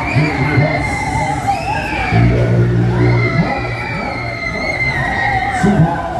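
Loud fairground ride music with a deep bass line, with riders shouting and cheering over it.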